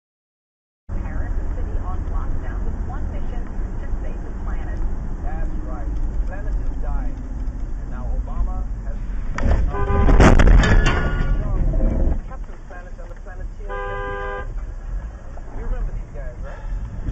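Dashcam audio of a car in traffic: steady low cabin and road rumble. About ten seconds in comes a sudden, loud burst of noise with a horn blaring through it, lasting about two seconds. Near fourteen seconds a car horn gives a short honk.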